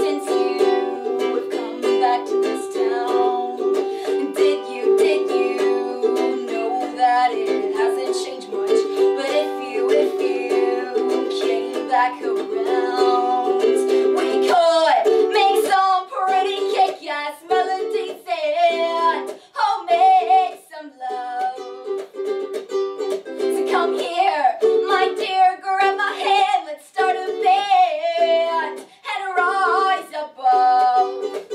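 A ukulele strummed in a steady rhythm, on its own for roughly the first half, then joined about halfway through by a woman singing along with it.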